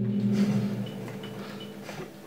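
The last notes of an instrumental rock song's electric guitar and bass guitar ringing on and slowly fading after the band stops.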